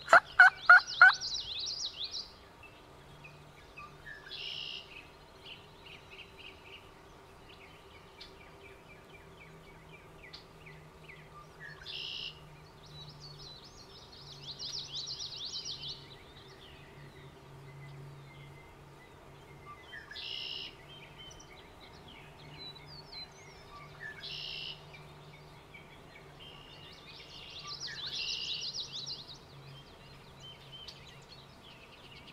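Wild turkey gobbler gobbling once, loud and close, in the first second: a rapid rattling run of about five pulses. Songbirds sing through the rest, with trills and a short high note repeated every several seconds.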